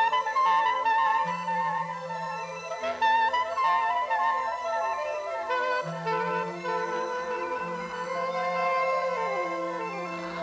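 Music: end-blown wooden flutes playing a slow melody of held notes with vibrato over a low sustained drone. Near the end the notes slide downward.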